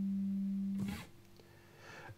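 Three-string cigar box guitar in GDG tuning letting a G chord ring out and slowly fade, then cut off with a short scrape just under a second in.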